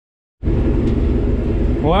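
Case IH 5088 combine running while cutting soybeans, heard from inside the cab: a steady low drone with a hum that cuts in suddenly about half a second in.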